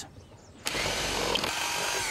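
Cordless power drill running steadily, boring through the centre of a vinyl LP record. It starts just over half a second in and runs for about a second and a half.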